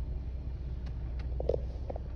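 A car engine idling, heard from inside the cabin as a steady low rumble, with a few faint clicks about a second in.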